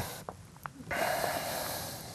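A man drawing a long, steady breath in through his nose, starting about a second in, after a couple of faint clicks.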